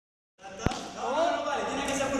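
A single sharp impact on the hard floor of a large sports hall, then a voice calling out with rising and falling pitch from about a second in.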